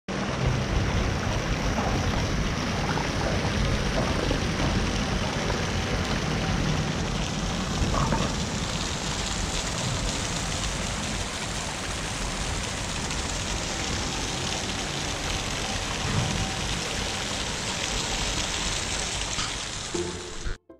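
Fountain jets splashing steadily into a stone pool, with a low, uneven rumble underneath.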